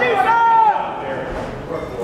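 A shrill, drawn-out shout from someone in the audience, high-pitched and bending in pitch before it falls away in the first second, then the murmur of the crowd.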